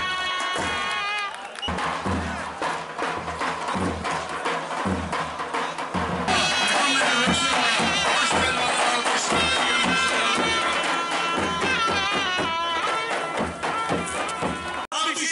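Davul bass drums beating steadily, about two strokes a second, under a zurna playing a wavering melody that comes in louder about six seconds in; a crowd murmurs beneath.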